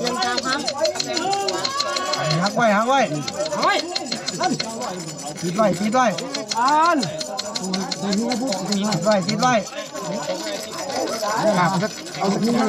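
Several men's voices talking and calling out over one another, with a fast ticking in the background through the first half.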